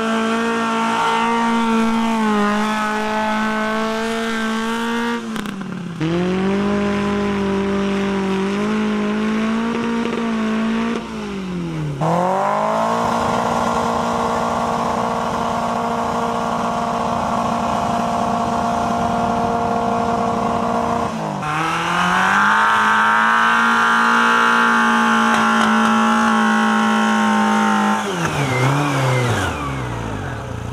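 Several trials cars' engines, one run after another, held at high steady revs with the rear wheels spinning as the cars lose grip climbing the hill. Near the end the revs fall away as the car stalls on the climb.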